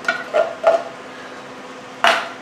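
Wooden spurtle scraping and knocking a tin can as baked beans are emptied into a cast iron Dutch oven, three short knocks in the first second. An induction burner hums steadily underneath.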